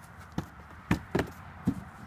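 A fist punching a stack of cardboard boxes: four quick thumps, the middle two the loudest.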